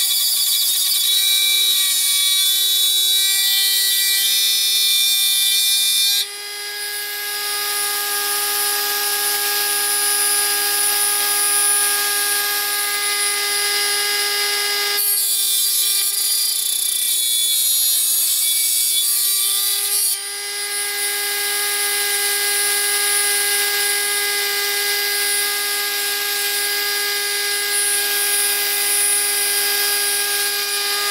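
Dremel rotary tool with a cut-off wheel running at a steady high whine while cutting through an aluminium tab. The harsh hiss of the cut is heaviest for the first six seconds and again from about fifteen to twenty seconds in.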